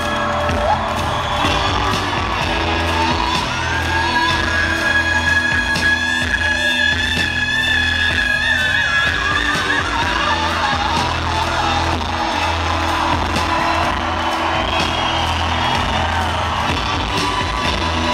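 A live rock band plays an instrumental passage with a heavy, steady bass; a long held high note runs through the middle.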